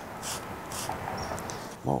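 Hand trigger spray bottle squirting a liquid cleaner onto a car windshield: a few quick hissing sprays, about two a second.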